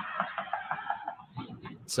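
Thin, low-fidelity outdoor audio from a driveway security camera's recording being played back, with nothing in its upper treble.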